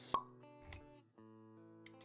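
A sharp pop sound effect just after the start, then a soft low thud, over background music with held notes.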